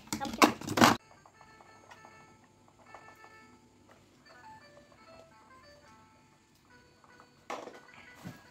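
A small toy electronic keyboard played by children: thin electronic notes at different pitches, one after another, faint and without a tune. A brief loud rustling noise in the first second.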